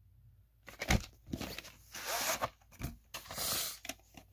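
A VHS cassette being slid out of its cardboard sleeve: a sharp knock about a second in, then rustling and scraping of plastic against cardboard.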